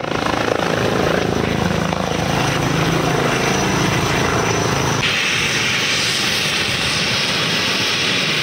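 Eurocopter EC135 helicopter hovering and setting down: loud, steady rotor and turbine noise. About five seconds in, the low rotor beat drops away and a brighter hiss takes over.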